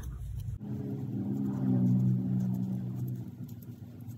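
A low, steady hum swells and fades over about three seconds. Faint clicking and rustling of yarn being chained on a crochet hook sits under it.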